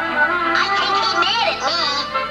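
Cartoon soundtrack playing from a television: cartoon music, with a high, warbling sound that bends up and down in pitch from about half a second in.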